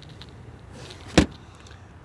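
One sharp knock about a second in: the Toyota Tacoma double cab's flip-up rear seat cushion being lowered and set back into place over the under-seat storage compartment.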